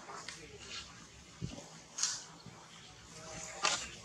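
Baby macaque suckling at its mother's nipple: a few soft wet smacks and clicks, with a brief faint squeak near the end.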